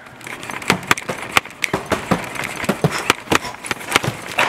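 Irregular clicks and knocks, about three to four a second, from boxed scooter parts and their packaging being handled and bumped on the shelves.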